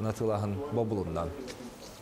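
A man's voice speaking in a low, even pitch, trailing off about a second and a half in.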